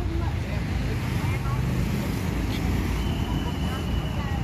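Night street traffic with motorcycles and cars passing, a continuous low rumble, with faint voices in the background. A thin steady high tone comes in about three seconds in.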